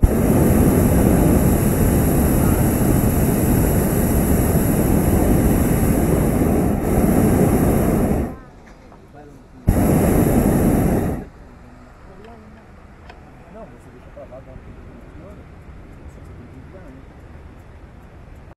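Hot-air balloon's propane burner firing in two loud blasts: one of about eight seconds, then after a short pause a second of about a second and a half that cuts off abruptly.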